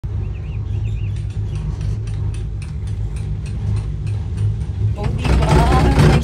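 Steady low rumble of wind and the moving cable car gondola heard from inside the cabin, with faint rapid ticking, about five a second, above it. About five seconds in, a louder, busier sound comes in.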